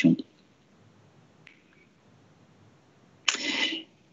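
A pause in a presenter's speech: the end of a word, then near silence with a faint tick, then a short breathy hiss, the speaker drawing breath before he talks again.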